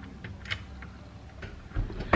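A few faint, scattered clicks and light handling sounds from hands at a minivan's dashboard, over a low steady hum, with a soft low thump near the end.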